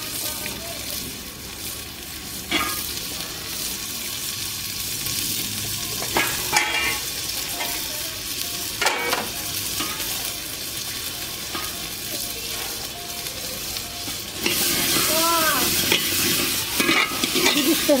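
Peas cooking in an aluminium pot over a wood fire, a steady sizzle with a few clinks of a steel spoon against the pot. The sizzle grows louder about three-quarters of the way through, as the pot is stirred and steams.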